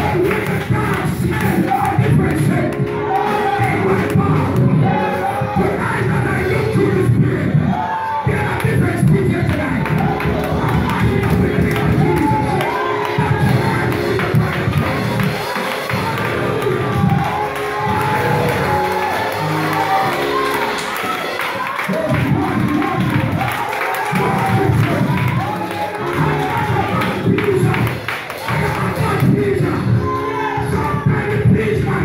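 Loud live worship music: a man singing into a microphone, with the congregation clapping and singing along.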